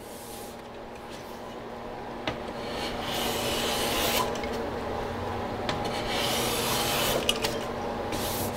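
Hand plane shaving the top edge of a dovetailed drawer side, a steady scraping hiss in long strokes, loudest about three and six seconds in. These are light fitting passes, trimming the drawer to slide snugly in its opening.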